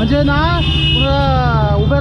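A man talking in a drawn-out voice over a steady low hum.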